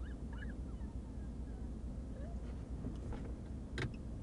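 Faint, high-pitched whimpering squeaks from a distressed woman, several short pitch glides in the first second and another about halfway, over the steady low rumble of a stopped vehicle's cabin. A single sharp click comes shortly before the end.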